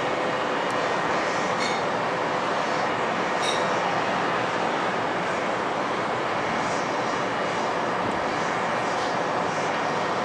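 Steady, even roar of city background noise, with no distinct events.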